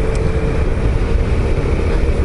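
Suzuki SV650S V-twin motorcycle riding along at steady speed: a steady engine note under loud wind rush on the microphone.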